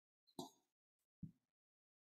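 Near silence on a video call, broken by two brief faint blips, about half a second and a second and a quarter in.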